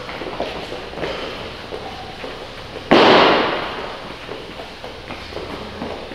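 One loud bang about three seconds in, dying away over about a second: a weight plate dropped onto the gym's rubber floor. Shuffling footsteps of people exercising go on around it.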